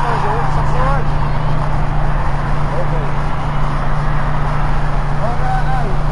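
City street ambience: a steady low rumble of traffic and engines under a constant noise haze, with brief snatches of indistinct voices near the start, about halfway through and near the end.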